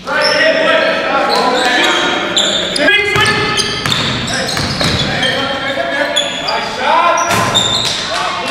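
Game sounds of indoor basketball in a gym hall: a basketball bouncing on the hardwood floor, sneakers squeaking and players' voices calling out.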